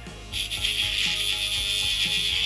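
Small pen-style rotary grinder grinding old tack welds off a battery's metal lead. It is a steady, high grinding hiss that starts about a third of a second in.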